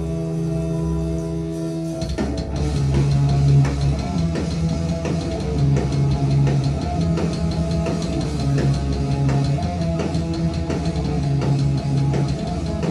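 Live rock band: a held, droning guitar chord, then about two seconds in the full band comes in together with electric guitars and a drum kit playing a steady beat.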